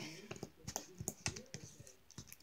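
Fingertips pressing and spreading sticky slime that has just been dosed with activator, giving an irregular run of small, quiet clicks and pops.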